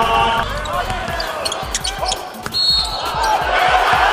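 Live arena game sound at a basketball game: a ball bouncing on the hardwood court, with crowd voices, and a few short high squeaks around the middle.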